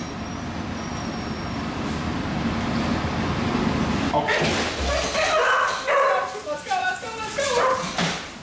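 Several dogs barking, yipping and whining in short, excited calls from about halfway in, after a steady background hiss. The dogs are being let out of their crates.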